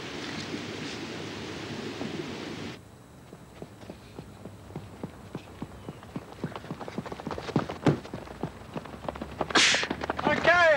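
A steady outdoor hiss of wind cuts off about three seconds in. Then come quick, irregular footfalls of people running on a track, several strikes a second, growing louder as the runners come closer, with a short sharp hiss near the end.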